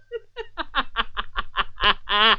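A man laughing heartily in a rapid run of short bursts, about seven a second, that start faint and grow louder.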